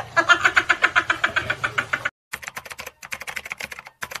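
A man laughing hard in rapid, evenly repeated bursts. The laughter breaks off about two seconds in, comes back in thinner bursts after a short gap, and cuts off abruptly at the end.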